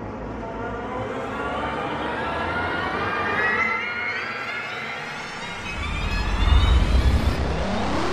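Cinematic sci-fi sound effect for a rush through space: a many-toned whoosh climbs steadily in pitch for the first few seconds, then a deep rumble swells up and is loudest about six to seven seconds in.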